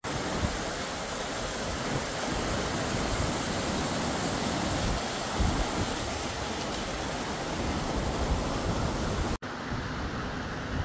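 A small mountain stream cascading over boulders: a steady rush of falling water, with some irregular wind rumble on the microphone. The sound drops out for an instant near the end.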